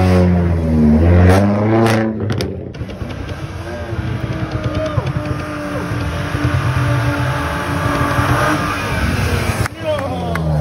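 A car engine is revved several times, its pitch rising and falling, for the first two seconds. After a break, crowd voices mix with a car engine running as the car moves slowly past.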